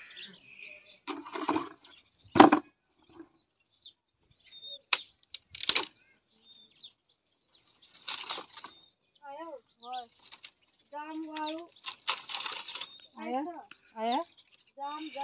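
Dry sticks cracking and rustling as firewood is pulled from a brush woodpile, the sharpest snap about two seconds in. In the second half a goat bleats several times in short, wavering calls.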